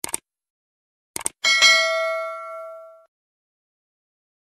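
Subscribe-button sound effect: two quick mouse clicks, then two more about a second later, followed at once by a bright notification-bell ding that rings out and fades over about a second and a half.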